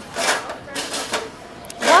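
Close mouth sounds of people chewing a mouthful of food, soft and irregular, with a voice starting near the end.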